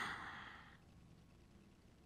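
A woman's breathy exhale, a sigh, close to the microphone, fading away within the first second and followed by near silence.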